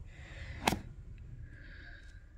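A single sharp click or knock about two-thirds of a second in, over a low steady rumble, as a book is handled on a shelf.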